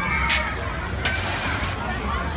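Amusement-ride machinery running with a steady low hum, with three short, sharp hisses of air about three-quarters of a second apart. Voices from the crowd are underneath.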